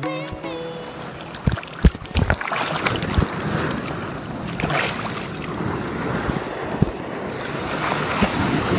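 Choppy sea water sloshing and splashing right at a phone's microphone, with wind buffeting it and several low knocks in the first few seconds.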